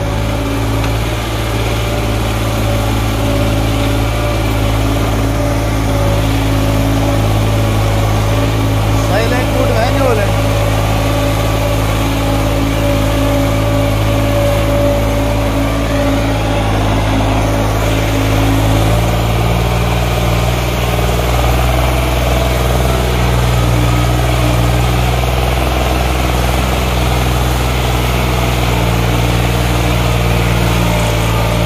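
New Holland 3630 tractor's three-cylinder diesel engine running steadily under heavy load as it hauls a fully loaded sand trolley up a ramp, enough to lift its front wheels. Its note shifts slightly about two-thirds of the way through.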